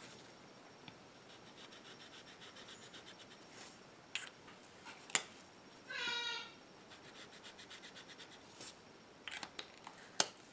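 Felt brush tip of an alcohol marker rubbing on paper in quick back-and-forth strokes, filling in colour swatches. A few sharp clicks come between swatches, and one short squeak about six seconds in.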